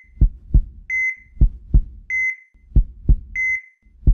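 Heart-monitor sound effect: a short high beep followed by a double heartbeat thump, repeating steadily about every 1.2 seconds, like a patient's monitor in intensive care.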